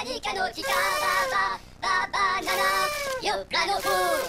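A high-pitched sung vocal sample in a hardcore mix, in short phrases with brief gaps, with no drum beat under it.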